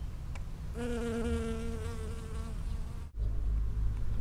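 Honeybee's wings buzzing close to the microphone: a steady hum starting about a second in and fading after about a second and a half. A low wind rumble runs underneath, and the sound cuts out for an instant about three seconds in.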